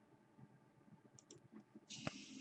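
Near silence with a few faint clicks, then a short rustle near the end as trading cards are handled.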